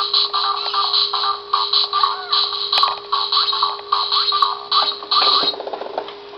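Electronic tune playing from a baby ride-on toy's small built-in speaker: chirpy, beeping notes over a steady hum. A short burst of rapid clicks comes near the end.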